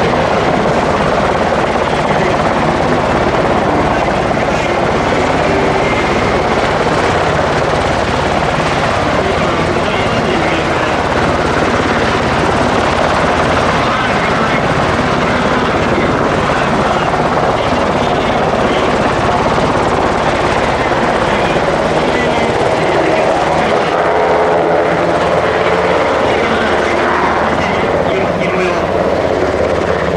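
UH-60JA Black Hawk helicopter hovering low, its main and tail rotors and twin turboshaft engines running loud and steady. Near the end it turns and begins to move off.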